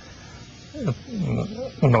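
A man's voice making several short vocal sounds that fall steeply in pitch, hesitation noises between words, after a brief pause holding only faint room noise.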